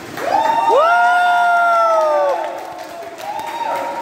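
A group of people cheering and whooping, led by a long loud cry that rises, holds for about two seconds and falls away, with a shorter held shout near the end.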